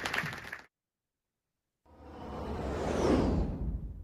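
Applause cut off abruptly under a second in, followed after a second of silence by a whoosh sound effect that swells, peaks and starts to fade.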